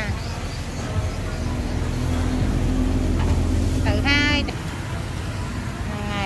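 A motor vehicle engine running close by for about three seconds over street noise, stopping or fading about four and a half seconds in. A brief voice sounds just before it ends.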